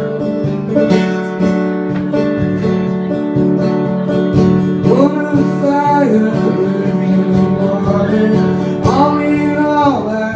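Acoustic guitar strummed steadily in a live solo performance, an instrumental passage between sung lines. A held melody line swells and falls over it twice, about halfway through and near the end.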